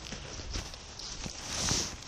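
Footsteps on dry leaf litter: a few soft separate thuds, then a louder rustling swish about one and a half seconds in as the man reaches the tent.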